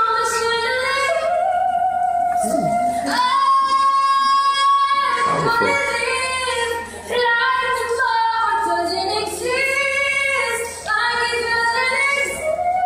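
A schoolgirl singing solo, apparently unaccompanied, in a classroom, sustaining long high notes with short breaths between phrases; one note is held for about two seconds near the middle.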